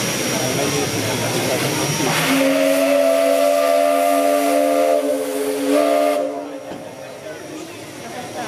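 Whistle of steam locomotive 555.3008 blowing one long blast of several tones sounding together. It opens with a rush of steam hiss about two seconds in, catches again briefly near the end of the blast, and cuts off after about four and a half seconds.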